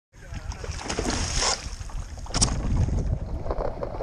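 Wind on the microphone and water splashing and lapping against a stand-up paddle board, with two louder bursts of noise about one and a half and two and a half seconds in.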